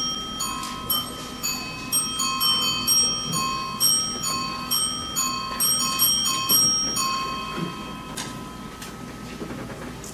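Bell chimes striking a short run of ringing notes, about two a second, that stops about seven seconds in and rings away.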